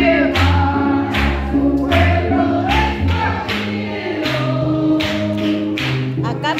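A congregation singing a gospel hymn together with a live band, with a keyboard and a strong bass line under the voices. A steady beat runs through it, with hand-clapping.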